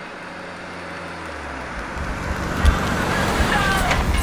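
A car driving on asphalt, its engine and tyre noise growing louder after the first second or so, with a single thump a little over halfway through.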